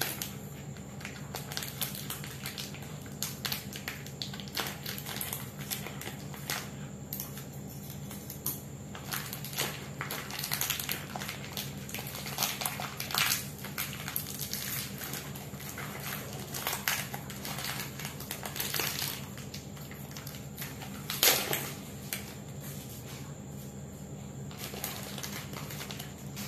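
Plastic Oreo biscuit wrappers crinkling and rustling as the packets are opened and the biscuits pulled out, in irregular crackles with one louder crackle about 21 seconds in.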